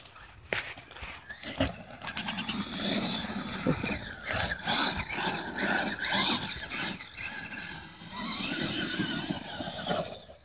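Traxxas E-Maxx electric RC monster truck's motors whining as it is driven across sand and back up a slope, the whine rising and falling with the throttle. It swells about two seconds in, eases briefly near the end, then surges again before dropping away.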